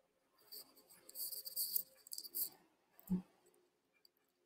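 Faint high-pitched chirping and crackling from the soundtrack of a shared video playing over a video call, with one short low thump about three seconds in.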